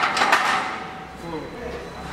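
A few sharp clanks and knocks of loaded barbells and weight plates in the first half second, then fainter voices.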